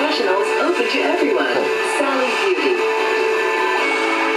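Music played over an FM radio broadcast, sounding thin with no bass, with a melody line that bends up and down in pitch.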